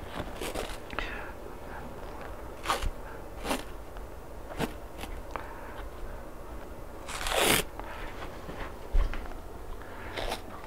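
Tape being pulled off the roll and wrapped around a knee over stuck-on electrodes: scattered short crinkles and scrapes, with a longer, louder rasp about seven seconds in.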